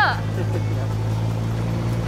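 Dune buggy engine running with a steady low drone while the buggy is being driven.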